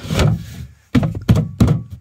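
A plastic water container, held by a bungee cord, knocking against a wooden frame as it is rocked by hand: several dull thunks, the loudest at the start and the rest in a quick run through the second half.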